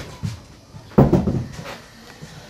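A hinged door, such as a room or cupboard door, shutting with a loud knock about a second in, after a soft click and a lighter knock at the start.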